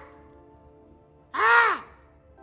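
A man imitating a crow's caw: one loud, drawn-out "caaw" about one and a half seconds in, its pitch rising and then falling, as one in a string of such calls. Faint steady background music between the calls.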